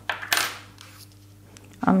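Small metal soldering-iron tips clinking as one is picked up from the desk: a light click, then a brighter metallic clink, both within the first half second.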